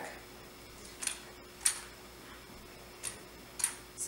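Aluminium underarm crutches clicking during a non-weight-bearing swing-through gait: two sharp clicks about half a second apart, then the same pair again about two seconds later.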